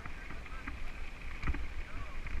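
Mountain bike rolling over a gravel dirt path: a steady rumble of tyres on the loose surface with the bike rattling, and wind on the bike-mounted camera's microphone.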